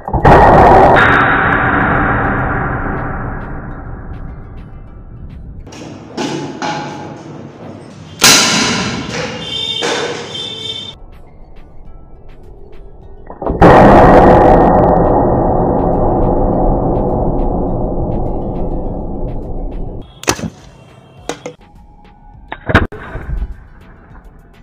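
Three loud booms, each dying away slowly over several seconds: one at the start, one about eight seconds in and one about thirteen and a half seconds in, followed by a few short sharp clicks near the end.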